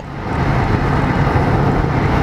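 Steady road and engine noise inside a moving car, a low even hum and rumble.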